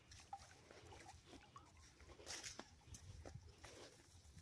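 Near silence, with a few faint, short clicks and soft sounds scattered through it.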